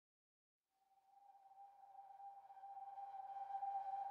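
A single sustained tone fading in about a second in and swelling steadily louder, with faint overtones above it: the opening note of calm new-age intro music.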